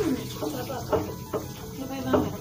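Short snatches of an indistinct, fairly high-pitched voice, rising and falling in pitch, with no clear cooking sound standing out.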